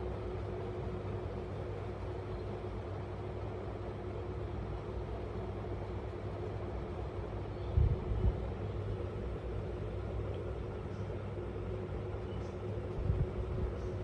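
Steady low background rumble with a constant faint hum, broken by two brief low bumps, one about eight seconds in and one near the end.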